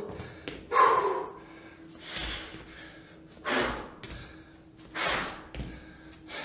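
A man breathing out hard about every second and a half in time with exercise repetitions, with soft thuds of his feet landing on the rubber gym floor.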